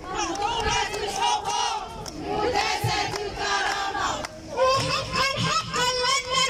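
A crowd of women chanting slogans together in high voices, in rhythmic shouted phrases, with a short break about four seconds in before the next chant begins.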